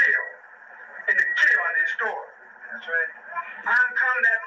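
A man's voice speaking in an archived 1994 audio recording played back, thin and narrow like a radio, with a steady high whine underneath.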